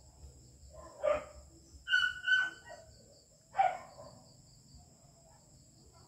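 A dog barks a few times over a steady, high-pitched insect chirring.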